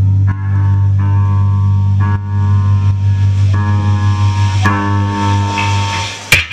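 Noise-rock band playing live: loud electric guitar and bass holding sustained chords over a steady low drone, with a new chord struck every second or so.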